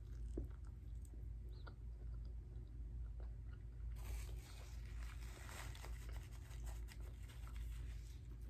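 Close-miked chewing of a crispy hand-breaded chicken and waffle sandwich: a few soft mouth clicks at first, then a run of dense crunching from about halfway through. A steady low hum lies under it.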